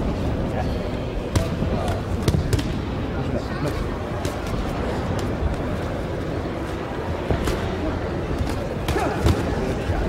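Boxing gloves landing punches during sparring: scattered, irregular sharp smacks over a steady murmur of voices echoing in a gym hall.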